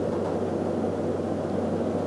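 Steady low-pitched background hum of room noise, even throughout with no changes or distinct events.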